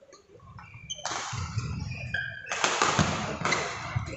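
Badminton rally on a synthetic court: sneakers squeak sharply again and again as the players move, and a racket strikes the shuttlecock now and then. It all sits over the busy noise of a sports hall, and it starts about a second in.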